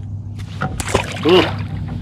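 A walleye splashing as it is dropped back into the water beside a canoe: a flurry of splashes lasting about a second, over a low steady hum.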